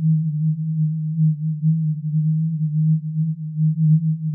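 Low, steady electronic drone tone with a faint higher overtone, wavering in loudness: a transition sound between podcast segments.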